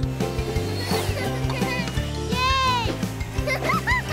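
Children's cartoon background music with a steady beat and sustained notes. About halfway through comes a brief high sound effect that rises and falls in pitch, and a few quick high chirps follow near the end.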